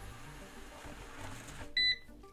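A eufy RoboVac 11S robot vacuum moving quietly toward its charging base with its suction off, then one short, high-pitched electronic beep near the end as it reaches the base and docks.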